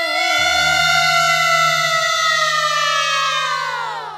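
A sinden (Javanese female gamelan singer) holding one long high note that sinks slowly in pitch and then slides down and fades near the end. A low ringing from the gamelan sounds underneath from about half a second in.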